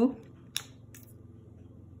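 A single short, sharp click about half a second in, against faint room tone.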